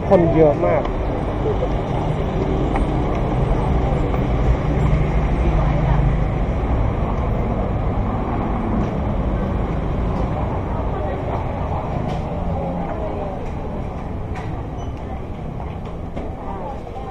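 Steady city street traffic noise: a low rumble with an engine hum held for most of the clip, and people's voices around.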